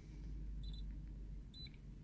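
Two short high electronic beeps from the Launch X431 ProS Mini scan tool, about a second apart: the sign that it has connected and is communicating with the car.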